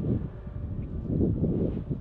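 Uneven low rumble of wind buffeting the microphone, rising and falling in gusts.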